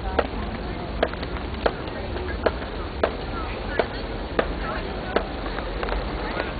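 Footsteps on a paved path, sharp, even steps at about three every two seconds, over faint crowd chatter and a steady low rumble.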